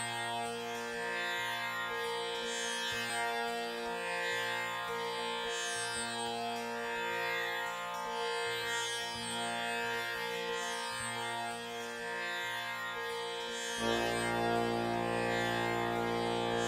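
Tanpura drone, its strings plucked in a cycle that repeats about every two seconds, each pluck shimmering with the instrument's buzz. About fourteen seconds in, a fuller, lower sustained accompaniment joins the drone.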